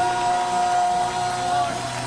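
Live worship band music: a male voice holds one long, steady note over sustained keyboard and bass, letting it go near the end.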